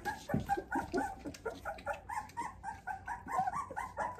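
Four-week-old Australian Labradoodle puppy whimpering: a quick string of short, high cries, several a second.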